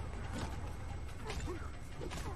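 Soundtrack of a TV action fight scene: short effect hits and voices over a background score.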